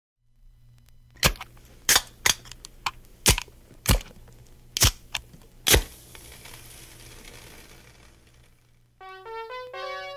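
Vinyl record playing its lead-in groove: a low hum with a run of loud, irregular pops and crackles for the first six seconds, then fainter surface hiss. About nine seconds in, the song starts with a keyboard melody of held, stepped notes.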